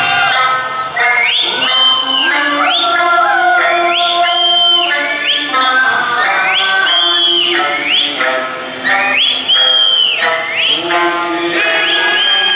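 Okinawan eisa folk music with singing. Over it, shrill finger whistles (yubibue) rise and hold high again and again, about every second and a half.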